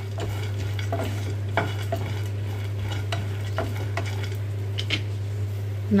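Wooden spatula stirring peanuts and roasted chickpeas in a nonstick frying pan, the nuts rattling and clicking against the pan now and then over a little oil sizzling as they roast. A steady low hum runs underneath.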